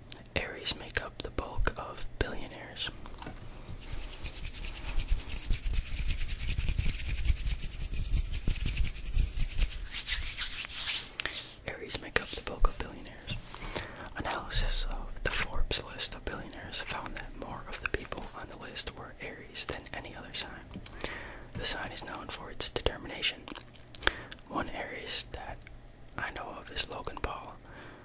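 A man whispering close to the microphone, crisp consonants and breaths, with no voiced speech. About four seconds in a steady hiss with a low rumble starts and lasts roughly seven seconds before the whispering continues.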